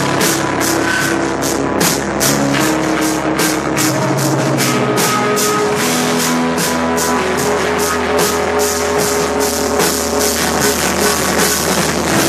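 Live screamo/blackgaze rock band playing an instrumental passage: distorted guitars hold sustained notes over fast, even drumming on cymbals and snare, loud throughout.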